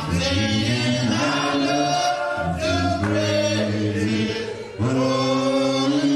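A choir singing, several voices holding long notes together, with a short break between phrases about three quarters of the way through.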